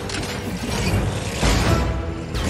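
Action-film soundtrack: music mixed with mechanical, clattering battle sound effects, with a heavy low thud about one and a half seconds in.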